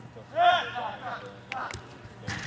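A player's short, high-pitched shout rising and falling about half a second in, with a sharp knock about a second and a half in.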